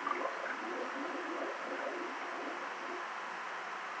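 Steady hiss from a VHS tape playing through a TV speaker, with a faint voice saying "SpongeBob" at the start, in the gap between a promo and the next bumper.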